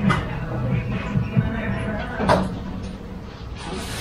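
Steady low hum of room ambience with two short knocks, one at the start and one about two seconds in, and faint voices underneath.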